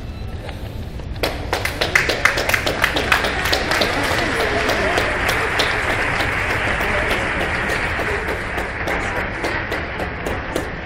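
Audience applause, a dense crowd clapping that starts about a second in and keeps going steadily.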